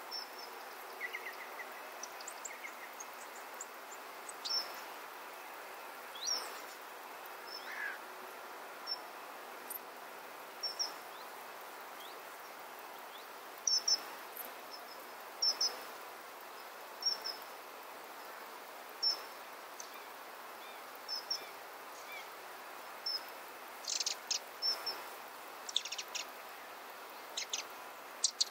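Hummingbirds at a feeder giving short, high chip notes, scattered irregularly and coming in a quicker flurry near the end, over a steady outdoor background hiss.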